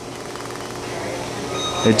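Steady hum and hiss of operating-room equipment, slowly growing a little louder, with a faint short high tone near the end.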